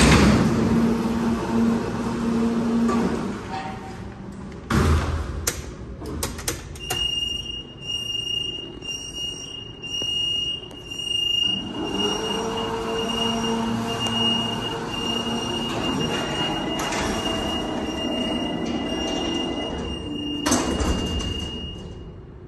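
Freight elevator's car gate and Peelle bi-parting hoistway doors operating. A low motor hum runs at the start, a thud comes about five seconds in, a steady high warning tone sounds from about seven seconds in, a second hum rises about twelve seconds in, and a thud comes near the end as the doors close.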